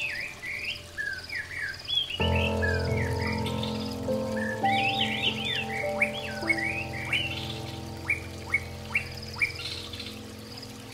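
Songbirds chirping in quick sliding notes over soft background music, whose sustained chords come in about two seconds in. In the second half the bird calls become single sharp downward chirps, one every half second or so.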